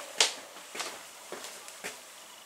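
Footsteps on a hard wooden floor: four short, evenly spaced steps, about two a second.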